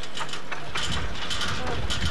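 Pedal-driven propeller spinning up on an exercise bike rig: a mechanical whirr with a low rumble and quick repeated clicking that build up about a second in.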